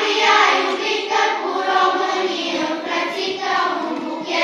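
A children's choir singing together.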